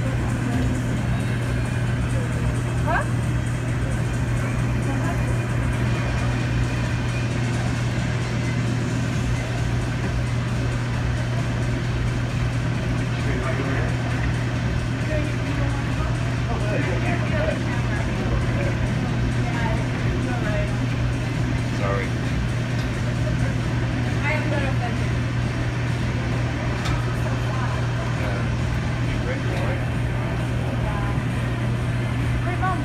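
MH-60T Jayhawk helicopter hovering close overhead during a hoist rescue. Its rotors and turbines make a loud, steady drone with a constant low hum.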